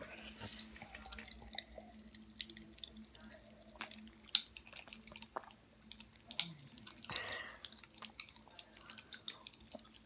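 Faint, irregular crackle of tiny clicks and pops from Pop Rocks candy fizzing in Sprite, over a faint steady hum.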